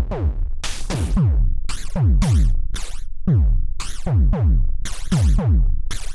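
Electronic drum pattern, an analog kick and snare with digital hi-hats, run through a BMC105 12-stage JFET phaser module with its resonance turned up hot. The phaser's sweep is modulated fast, so the tails of the snare and hats wash up and down, while the kicks fall in pitch at about three hits a second.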